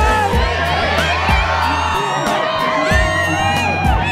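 A large crowd cheering and whooping, mixed under background music with a steady beat.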